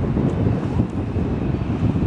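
Wind buffeting the camera's microphone: a loud, irregular low rumble.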